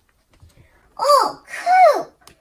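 A person's voice giving two short, high-pitched exclamations about a second in, each rising and falling in pitch.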